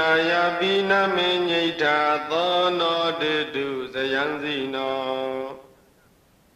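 A monk's male voice chanting a long, melodic recitation phrase on held notes with small rises and falls. The phrase stops sharply about five and a half seconds in.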